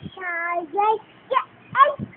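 Young boy singing in a sing-song voice: one held note, then a few short syllables that slide up and down in pitch.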